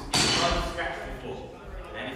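A sudden loud knock close by, fading out over about half a second in a large hall, then indistinct talking.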